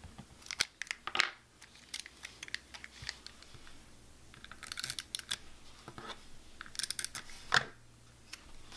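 Journal paper and sticker sheets being handled close to the microphone: crinkling and rustling in three short spells with a few sharp clicks, the loudest just before the end.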